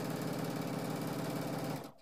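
Baby Lock sewing machine stitching a seam at speed through layered cotton quilting fabric, a fast, even needle rhythm that stops just before the end.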